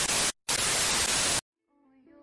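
Television static sound effect: a loud, even hiss with a brief cut-out about a third of a second in, stopping abruptly about a second and a half in.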